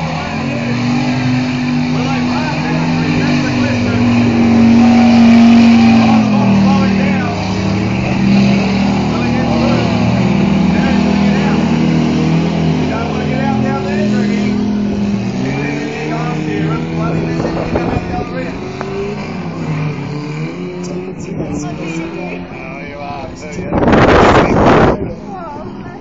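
Off-road 4x4 engine revving hard under load, its pitch holding, dropping and climbing again as the throttle is worked. It is loudest about five seconds in.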